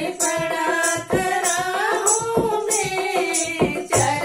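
Women singing a Hindi devotional bhajan to a dholak, with hand claps keeping the beat.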